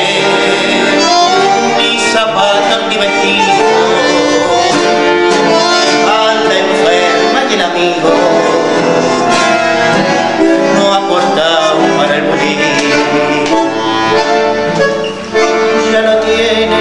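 A male voice singing a tango, accompanied by a bandoneon playing long held chords and melody.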